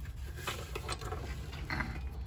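Light metallic clicks and rattles as the latched steel engine cover inside the cab of a 1966 Chevy G10 van is handled and lifted off the engine.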